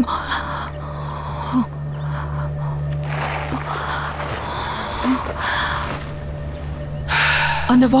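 A woman gasping, drawing several breaths as she comes round from unconsciousness, over a low, steady music drone.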